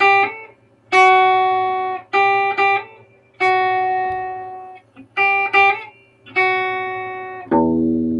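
Clean electric guitar, a Special II, picking single notes about a second apart, each ringing and fading, with quick hammer-on and pull-off steps between notes around the 2nd fret. A lower, fuller chord rings out near the end.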